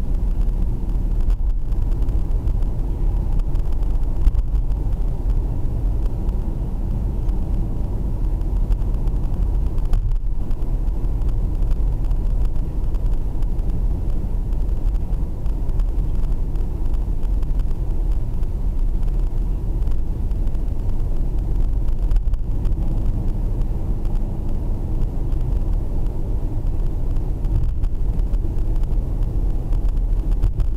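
Steady low rumble of a Mercedes-Benz taxi driving at road speed, heard from inside the cabin.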